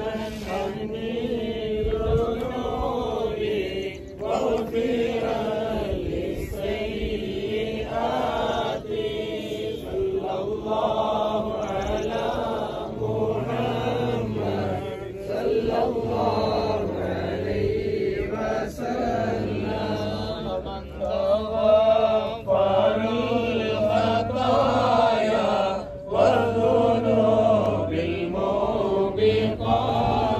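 Voices chanting an Arabic devotional chant of praise on the Prophet (salawat), slow and melodic and continuous. A deeper held note comes in under the chant about halfway through.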